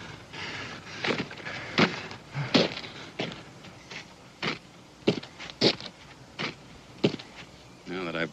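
Footsteps: a string of irregular scuffs and knocks, roughly one every half second to a second.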